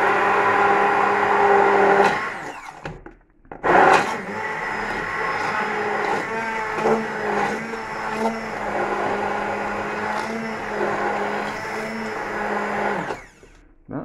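Braun hand-held stick blender running in a saucepan of thin soup, its motor humming steadily as it churns the liquid. It stops about two seconds in, starts again a second or so later, and runs until shortly before the end.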